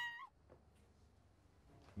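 A woman's high, held scream that breaks upward and cuts off just after the start, then near silence.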